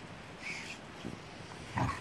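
Dogs play-fighting, with a short, loud, low growl near the end and a few softer grunts before it.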